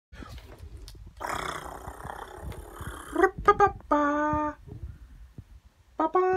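A man's voice making a loud, rough, drawn-out noise for about two seconds. It is followed by a few short voiced sounds and a briefly held hummed note about four seconds in.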